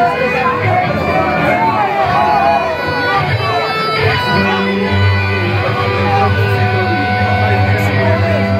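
Live rock band through a club PA: a man's voice over loose electric-guitar playing, then from about four seconds in a held electric-guitar chord over steady bass notes.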